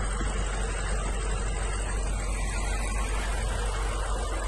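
BMW M5 F90's twin-turbo V8 idling, heard close up from the engine bay as a steady, even hum with a strong low drone.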